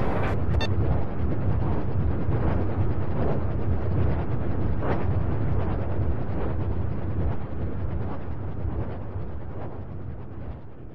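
Loud, low rumbling roar of electronic space-rock noise from a synthesizer drone, holding steady and then fading gradually over the last few seconds.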